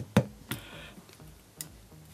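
RP Toolz Cutter's blade chopping through thin plastic card (PlastiCard): three sharp clicks, the first one loudest, about a third of a second apart for the first two and the last about a second later.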